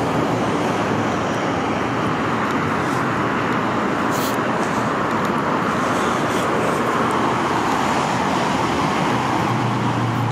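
Steady traffic noise from the I-405 freeway, an unbroken rush of tyres and engines, with a faint short click about four seconds in.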